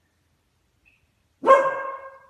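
A beagle barks once, suddenly and loudly, about one and a half seconds in, the call trailing off over roughly half a second.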